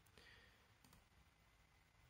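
Near silence: faint room tone with two faint clicks, one near the start and one just under a second in.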